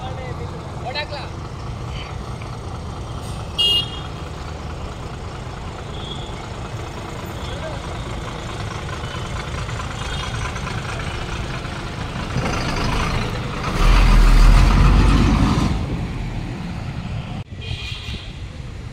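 City bus engine running as the bus pulls away close by, with one short horn toot about four seconds in. The engine noise swells to its loudest as the bus passes, about three-quarters of the way through, then drops back to a steady traffic rumble.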